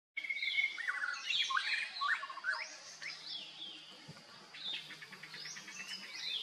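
Several birds singing and chirping, a busy mix of quick rising and falling whistled calls, thickest in the first three seconds. A faint steady low hum comes in about three seconds in.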